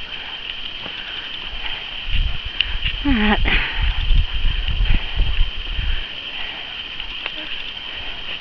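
Camera handling and footstep noise while walking a grassy track: a few seconds of low rumbling and thumping, with a short cry about three seconds in that falls steeply in pitch. A steady high hiss runs underneath.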